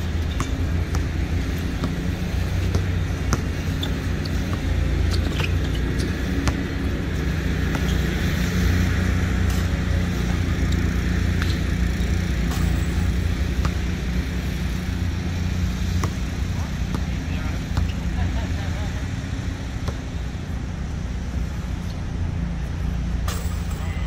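Outdoor basketball-court ambience: a steady low rumble of distant road traffic, with scattered sharp knocks from the ball and shoes on the court and faint voices.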